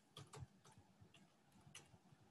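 Faint computer keyboard keystrokes, a handful of scattered clicks as a few letters are typed, against near silence.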